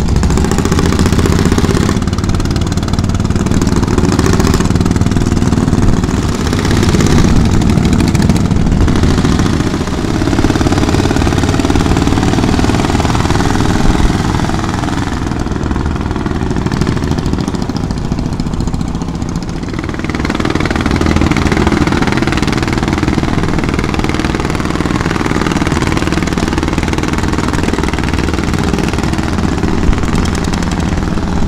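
Engines of small wooden passenger boats running loudly and steadily close by as they motor past, with a shift in the engine sound about two-thirds of the way through.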